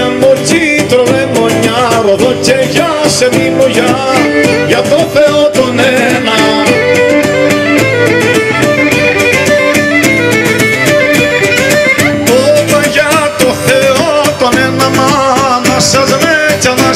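Live Cretan folk music: a violin playing the melody over laouto accompaniment.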